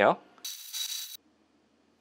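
A belt grinder's abrasive belt grinding a steel kitchen-knife blade to thin its edge: a brief, high-pitched grinding hiss with a steady whine, lasting under a second and cutting off abruptly.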